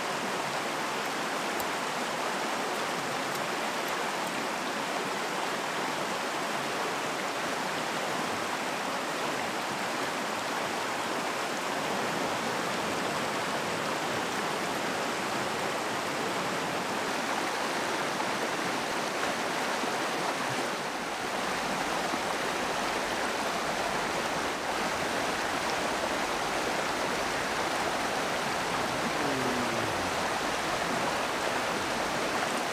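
Shallow stream running over stones: a steady rush of flowing water.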